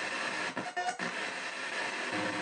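P-SB7 ghost box sweeping the FM band in reverse: steady radio static hiss, chopping up briefly about halfway through with a short tone.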